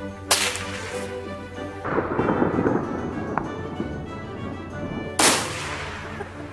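Two sharp gunshots, about a third of a second in and near the end, with a longer blast about two seconds in as a target blows apart in a fireball, all over steady background music.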